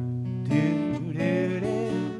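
Steel-string acoustic guitar played, with a man's voice singing without words over it from about half a second in.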